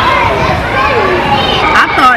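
Babble of many voices, children's among them, echoing in a large public hall such as a mall food court; a closer voice comes in near the end.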